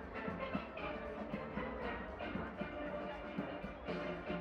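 A steel band playing live, many steelpans struck together in a fast, steady rhythm with drums underneath.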